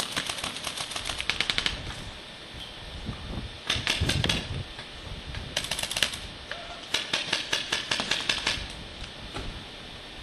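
Paintball markers firing rapid strings of shots in four bursts, the first and last the longest.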